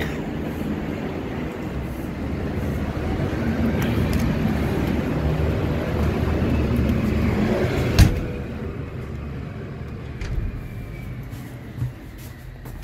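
A road vehicle passing in the street, its low rumble swelling and then fading away. A single sharp knock comes about eight seconds in.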